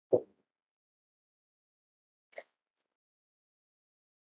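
Near silence, broken right at the start by one short dull thump on the podium microphone and a faint click a little over two seconds later.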